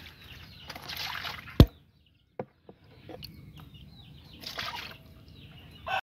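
Water poured from a plastic bowl into a plastic tub of juvenile swamp eels, splashing and sloshing in two spells. A single sharp knock, the loudest sound, comes about a second and a half in, followed by a few fainter clicks.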